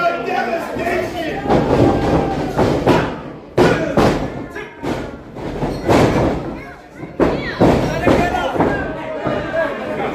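A series of about ten irregular thuds as wrestlers strike each other and hit the wrestling ring's canvas, over the voices of a crowd in a hall.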